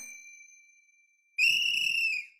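A bright, high ding sounds about a second and a half in, holding for close to a second before dying away: a chime sound effect over the closing end card. Before it, the last high note of the ending music fades out.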